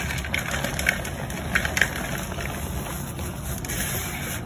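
Hands crushing and squeezing soft, powdery gym chalk: a steady soft crunching rub with a few crisp crackles in the first half.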